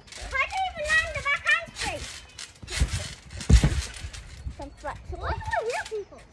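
Trampoline mat taking two heavy thumps about halfway through, the second the loudest, as someone bounces and lands on it. Young voices talking before and after.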